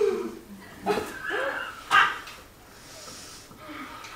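A woman's wordless vocal sounds: short cries that slide up and down in pitch, with a sharp, loud outburst about two seconds in, then quieter sounds.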